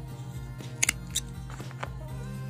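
Small spring-type thread snips cutting yarn: a quick pair of sharp snips a little less than a second in, then another just after, over steady background music.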